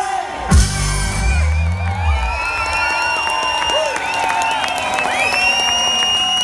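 Live band music coming to an end: a heavy drum-and-bass hit about half a second in, the bass dying away around two seconds in, and long wavering high notes held on over it while the crowd cheers and whoops.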